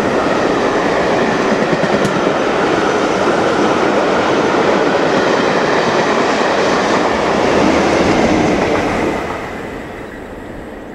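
LMS Black 5 4-6-0 steam locomotive 45212 and its train passing through at speed: a loud, steady rush of wheels and coaches on the rails, fading about nine seconds in as the train clears.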